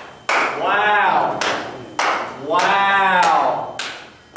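A few loud, separate claps ringing in a room, with two long drawn-out shouts, each rising and then falling in pitch, about half a second in and near three seconds.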